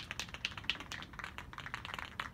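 Aerosol spray paint can being shaken, its mixing ball rattling inside in a quick run of sharp clicks, several a second, to mix the paint before spraying.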